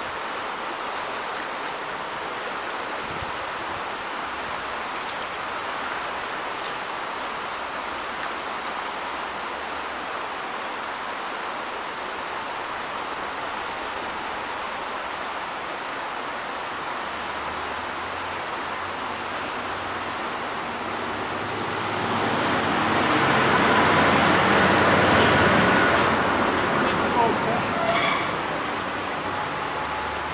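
Shallow river water running over stones in a steady rush. About two-thirds of the way in, a louder rushing swell with a low rumble rises and fades over about five seconds, followed by a couple of splashes of feet wading through the water.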